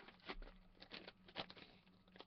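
Faint scattered crackles of a clear plastic card-pack wrapper being pulled open by hand, about half a dozen small clicks.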